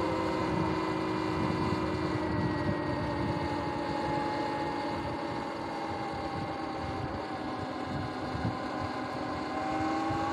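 Sur-Ron X electric dirt bike's motor and drivetrain whining as it rides, the pitch sinking slowly as the bike eases off, then rising again near the end as it speeds back up. Wind rumbles on the microphone underneath.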